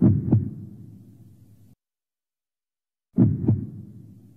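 Deep double thumps like a heartbeat, used as a promo's sound effect: two pairs about three seconds apart, each pair two quick strikes that fade out over a second or so, with silence between.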